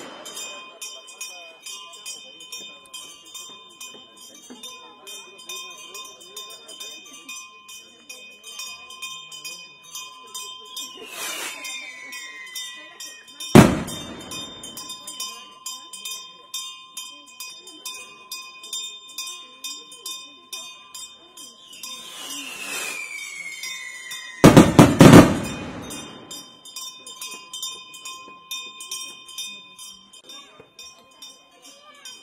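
Two skyrockets: each a falling whistle ending in a loud bang, the first about thirteen seconds in, the second a cluster of bangs near twenty-five seconds. A steady high ringing with about three ticks a second runs underneath.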